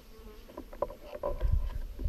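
An insect buzzing with a faint thin hum, over scattered small clicks and rustles, with low rumbling coming in during the second half.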